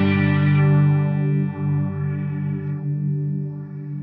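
Sustained electric guitar chord ringing out through the Strymon NightSky reverb pedal, its modulation set to target the filter. The low notes ring on steadily while the upper overtones drop away in steps about half a second, a second and a half, and three seconds in.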